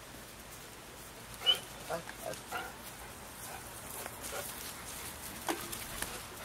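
Saint Bernard puppies giving a few short yelps and grunts close together, the first the loudest, about a second and a half in, with a few fainter short sounds later.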